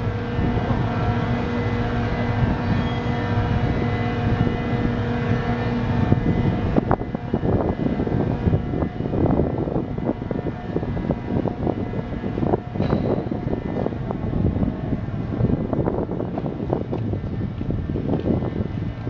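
Steady mechanical hum of a bascule footbridge's drive machinery as the leaf lowers, cutting off about six and a half seconds in with a click. After that there is uneven, rumbling outdoor noise.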